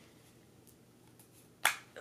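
Quiet room tone, then a single sharp click near the end as the plastic cap is pulled off a small pump spray bottle.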